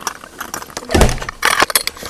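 Handling noise from a camera knocking against clothing: scattered clicks and clinks, a dull thump about a second in, and a quick cluster of clicks just after.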